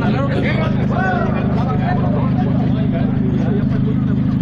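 A vehicle engine idling close by, a steady low hum, with people talking faintly in the background.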